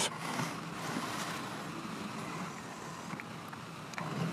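Room tone of a courtroom picked up through the audio feed: a steady, low hiss with no distinct event.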